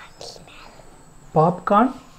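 Close, breathy whispering, then a voice saying two short loud syllables about a second and a half in: a small child whispering into a man's ear, then talking.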